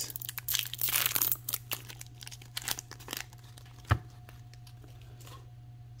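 A foil trading-card booster pack being torn open and its wrapper crinkled. The crackling rustle fades out after about three seconds, and a single sharp click comes about four seconds in.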